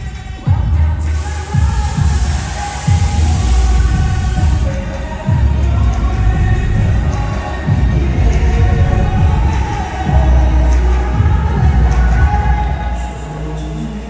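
A pop dance track plays loud over an arena sound system with a heavy bass beat, and a crowd cheers underneath. About a second in, a loud rushing noise joins for about four seconds.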